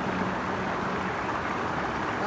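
Small mountain stream running over rocks: a steady wash of flowing water.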